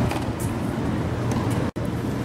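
Steady low rumble of outdoor background noise, cutting out for an instant near the end.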